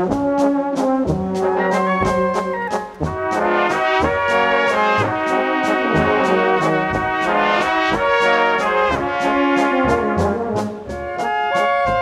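Brass band playing live: trombones, trumpets and flugelhorns, tenor horns, tubas and clarinets in full harmony over a steady drum beat.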